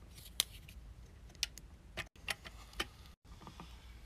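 Faint scattered clicks and taps, about half a dozen over a few seconds, from a hand wiping the inside of a wet stainless-steel drum with a cleaning pad.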